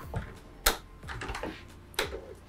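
A few light, irregular clicks and taps, one sharper click a little over half a second in.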